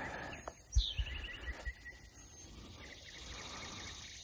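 Quiet outdoor field ambience with a short bird call, a quick run of chirps about a second in. There are two soft low thumps just before it.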